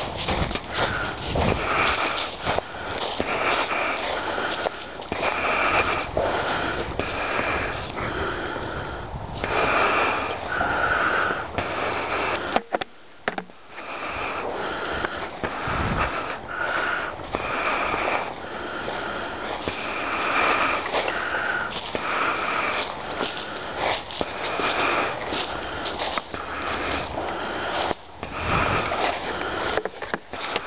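Footsteps crunching and swishing through a thick layer of dry fallen leaves at a steady walking pace, about one step a second, with a brief pause about 13 seconds in.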